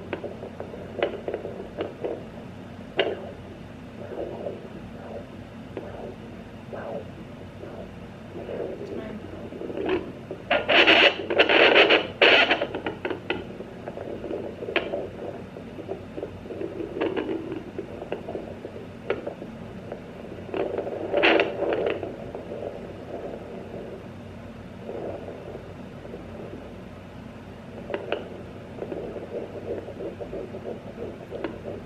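Sonoline B handheld fetal doppler's speaker hissing and crackling as its probe is moved over the belly, with irregular scraping and rushing bursts, the loudest at about eleven and twenty-one seconds in. It is still searching: no fetal heartbeat has been picked up yet.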